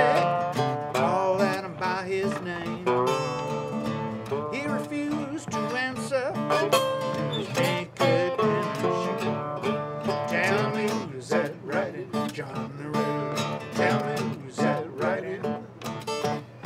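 A resonator guitar and an acoustic guitar playing together in a country-blues style: picked notes over a steady bass line, some notes gliding in pitch.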